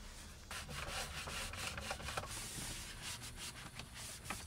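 A cloth rubbing and wiping the plastic steering wheel and dashboard of a Nissan Sentra, in quick scrubbing strokes that start about half a second in.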